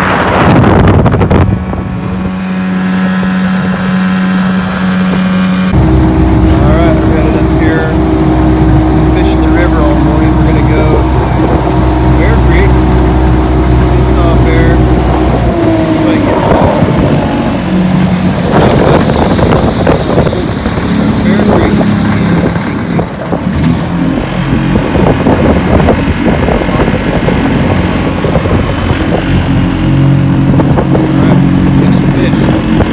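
Motorboat engine running under way, holding steady pitches that step up or down a few times, with wind buffeting the microphone.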